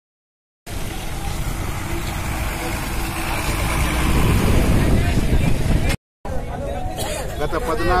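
A bus engine running, a steady low rumble that starts after a second of silence and grows louder midway. After a brief dropout near six seconds, a man begins speaking.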